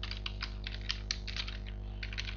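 Computer keyboard being typed on, a quick uneven run of about a dozen key presses, over a steady low electrical hum.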